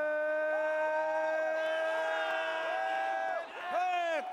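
A man's voice holding one long drawn-out note for about three and a half seconds, a ring announcer stretching out the winner's name, with short shouts from other voices over it and a burst of shouting near the end.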